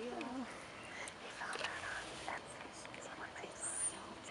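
Quiet murmured voices and whispering, with a brief high-pitched chirp near the end.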